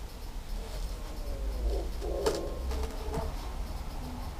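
A car tyre being forced down onto three poles, the rubber rubbing and creaking against them, with one sharp knock a little past two seconds in.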